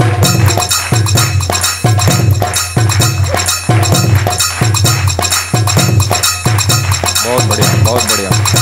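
Background music with a steady, fast percussive beat.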